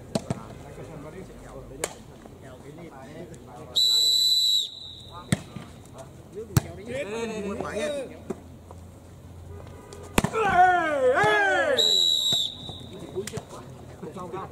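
Referee's whistle blown in two short steady blasts, once about four seconds in and again near the end, starting and ending a volleyball rally. Between them come sharp slaps of the ball being struck, and men's shouting voices.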